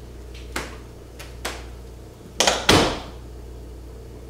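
Interior door being closed: a couple of light clicks, then a loud double knock as it swings shut and latches about two and a half seconds in.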